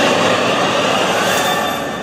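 Logo-reveal sound effect: a loud rushing whoosh with a low rumble under it, slowly dying away.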